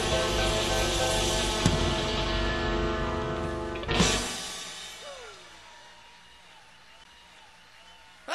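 Live electric blues band (guitar, harmonica, piano, bass and drums) holding the final chord of a song, closed with a sharp ensemble hit about four seconds in, after which the sound rings out and fades away.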